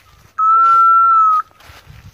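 A single long, steady blast on a dog whistle, lasting about a second, with a slight dip in pitch at the start.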